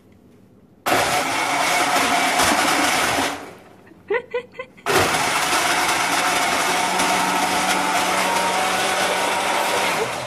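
Countertop blender blending a frappe, run in two bursts. It starts abruptly about a second in, stops a couple of seconds later, and starts again about halfway through, running until the end. It is loud: "a lot of noise".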